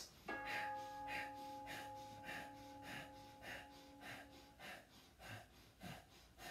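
Sharp, rhythmic exhalations through the nose, about ten in a row at just under two a second, one with each downward bounce of a squatting Kundalini yoga breathing exercise. A steady held tone sounds alongside for the first four seconds or so.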